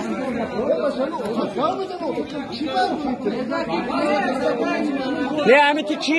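Several men talking over one another in a crowd, a jumble of overlapping voices, with one voice raised loudest just before the end.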